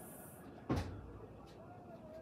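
A single sharp thump about three-quarters of a second in, with a short low tail that dies away within half a second.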